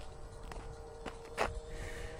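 A few faint clicks, about three, the last the loudest, from a headlamp being handled as its brightness is fiddled with, over a faint steady hum.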